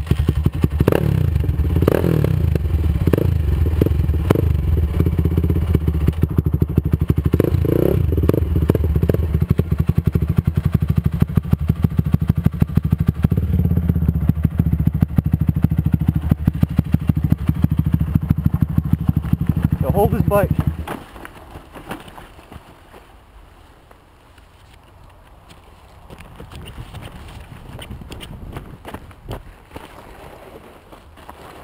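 Honda CR85 big-wheel's 85 cc two-stroke single-cylinder engine running close to the microphone, revving up and down with rapid firing pulses. The engine sound cuts out suddenly about two-thirds of the way through, leaving only a much fainter background.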